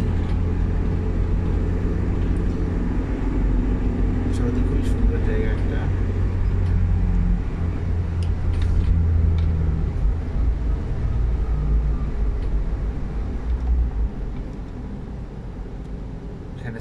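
Low rumble of engine and road noise heard from inside a moving car's cabin, with a faint engine tone that shifts in pitch as it drives; the rumble drops off sharply near the end.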